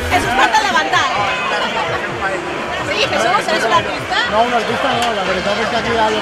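Several people talking over one another, with crowd chatter behind.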